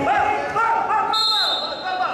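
Voices shouting across a wrestling hall, then a steady high whistle blast from about a second in, lasting nearly a second: a referee's whistle stopping the action.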